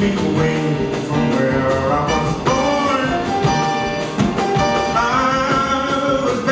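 Male baritone jazz vocalist singing live with a jazz band, upright bass plucked under the voice.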